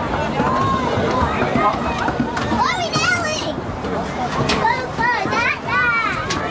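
Overlapping, indistinct shouting and chatter of players' and spectators' voices, with clusters of high-pitched calls about halfway through and again near the end.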